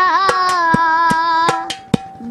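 A child singing one long held note that wavers at first and then steadies, ending shortly before the end. It is accompanied by several sharp hand strikes on a metal water pot played as a drum.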